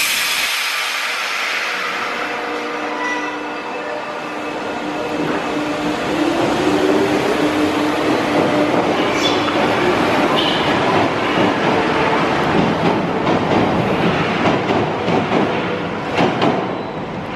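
Paris Métro MF 77 train pulling out of the station and accelerating away. A rising motor whine comes about five seconds in, then louder running and wheel-on-rail rattle as the cars pass and leave.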